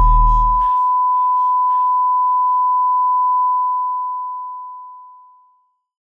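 The hip-hop beat cuts off just under a second in, leaving one steady electronic beep tone at a single pitch, which holds and then fades out near the end.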